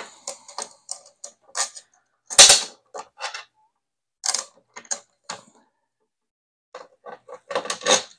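Small metal hardware being fitted to a backpack frame: a bolt, washer and spacer clicking and tapping against the frame in a dozen or so short, scattered clicks, the loudest about two and a half seconds in, with a pause around six seconds.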